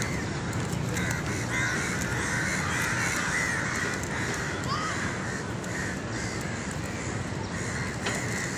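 Birds calling, with a busy chatter strongest through the middle, over a steady outdoor background hum.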